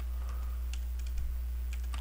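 Computer keyboard being typed on: several irregularly spaced key clicks as a word is entered, over a steady low electrical hum.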